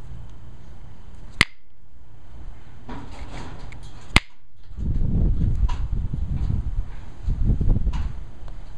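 Two sharp clicks about three seconds apart: flakes popping off the edge of an Alibates flint preform under a copper-tipped pressure flaker. A loud, irregular low rumble follows over the last three seconds.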